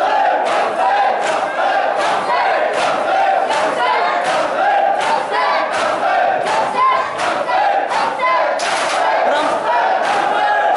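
A dense crowd of men chanting and shouting together, crossed by sharp hand slaps at roughly two a second.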